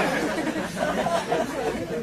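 Live audience laughing and chattering, many voices overlapping, the laughter dying down.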